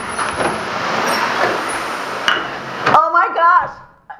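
Heavy rain pouring down, with water running off a roof, as a dense steady rush. It cuts off suddenly about three seconds in, and a voice follows.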